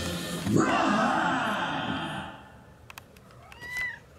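A song's closing sound fades out over the first two seconds; near the end a cat gives one short meow that rises and falls in pitch.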